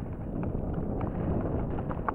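Mountain bike rolling fast down a loose dirt trail: a steady rumble of tyres over dirt and stones with scattered rattling knocks from the bike, and wind buffeting the microphone.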